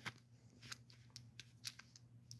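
Near silence, broken by a few faint, short clicks of things being handled.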